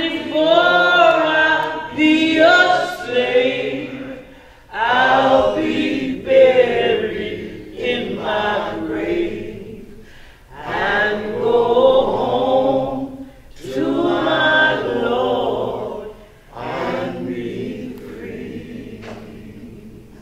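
Voices singing together, in held phrases several seconds long with short pauses between, trailing off near the end.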